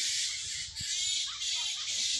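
Birds calling in the trees over a steady high hiss.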